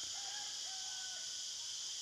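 Steady high-pitched insect chorus, with a faint, distant drawn-out bird call lasting about a second early on.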